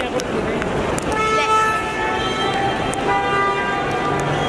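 Vehicle horns honking twice, each a steady held note lasting over a second, the first about a second in and the second near the end, over background voices and traffic noise.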